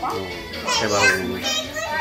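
A young child's high-pitched voice rising and falling, with music playing underneath.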